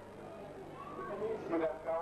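Speech: a voice talking after a short pause between phrases, over a steady low hum.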